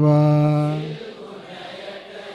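A Buddhist monk chanting Sinhala devotional verses into a microphone, holding the last syllable as one long steady note that ends about a second in. A much quieter hall murmur follows.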